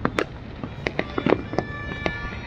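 Fireworks going off: a rapid, irregular string of sharp bangs and cracks, some overlapping.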